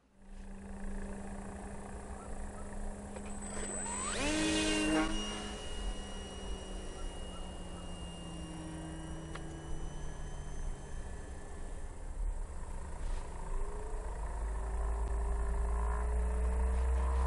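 Outdoor ambience with a steady low hum of slowly falling tones, like distant engines. A brief sharply rising whine comes about four seconds in, and wind rumbles on the microphone more and more toward the end.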